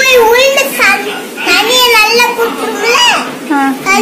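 A young boy speaking in Tamil in a high child's voice, his pitch rising and falling as he talks.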